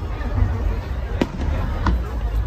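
Aerial fireworks going off: two sharp bangs in the second half, the first the louder, about two-thirds of a second apart.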